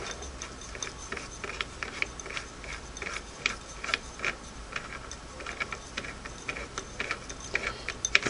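Light, irregular metallic clicks and ticks from a Singer 301A hand wheel as its stop motion clamp nut is turned off by hand.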